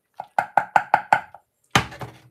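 A wooden spatula knocked against a metal saucepan: a quick, even run of about seven knocks, each with a short ring, then one louder knock near the end.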